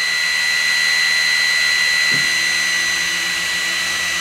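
Aufero Laser 2 10-watt laser engraver running a framing pass, with its laser module's cooling fan giving a steady high whine and hiss. About two seconds in, a lower steady hum joins as the stepper motors drive the head around the outline of the design.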